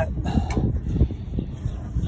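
Two short clicks, about half a second and a second in, from a hand handling an engine wiring harness and its connector, over a low steady rumble.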